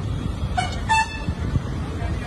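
A vehicle horn tooting twice in quick succession, two short blasts about a second in, over a steady low rumble of street traffic.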